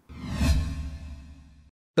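A whoosh sound effect over a deep low rumble, used as a transition between news stories. It swells over the first half-second, fades, and cuts off short shortly before the end.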